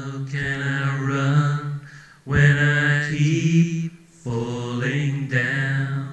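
A low male voice singing long, held, wordless chant-like notes in three phrases, each about a second and a half, with short breaks between them.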